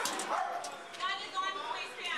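A police dog barking and yelping, with several short high calls in the second half, over voices in the background.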